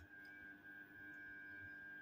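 Near silence with a faint, steady high-pitched whine, like electrical hum from bench equipment.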